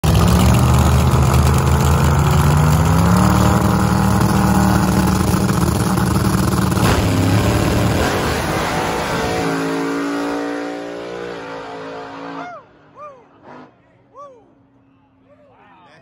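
Drag-race cars running down the strip at full throttle: a loud, steady engine note that steps up in pitch about three seconds in, then fades away into the distance and is gone a few seconds before the end. Near the end, a few short rising-and-falling whoops from onlookers.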